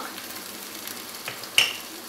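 Chicken pieces frying in oil in a pan, a steady sizzle, with a single sharp click about one and a half seconds in.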